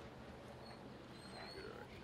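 Quiet outdoor background with a few faint, thin, high-pitched bird chirps around the middle.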